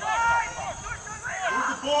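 Shouting voices of soccer players and sideline spectators during play, several short calls overlapping.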